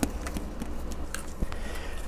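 Low steady room hum with a few faint, scattered clicks.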